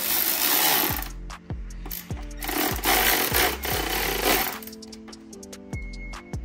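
Cordless power driver with a socket extension tightening a hose clamp on an intake tube. It runs in two harsh bursts: one about a second long at the start, and a longer one of about two seconds in the middle. Background music with a steady beat plays underneath.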